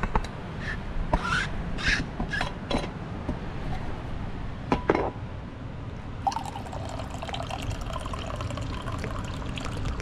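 Stainless steel vacuum flask being unscrewed, with a few short scrapes and clicks from the lid. About six seconds in, coffee starts to pour from the flask in a steady stream into a hard reusable to-go cup.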